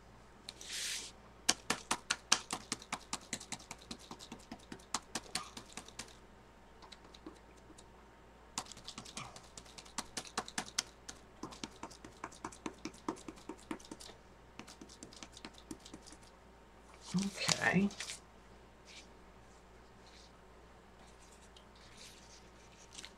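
Rapid light tapping in two bursts of several seconds each, about six to eight taps a second. A short hiss comes just before the first burst, and a brief louder noise about seventeen seconds in.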